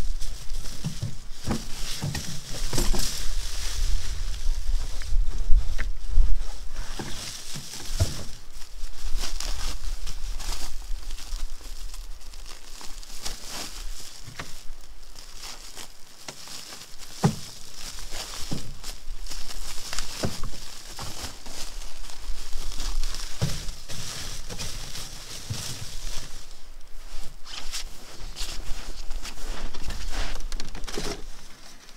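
Rustling and crinkling as a sack and gear are handled in a wooden sled box, with scattered light knocks and a low rumble of wind on the microphone, strongest in the first few seconds.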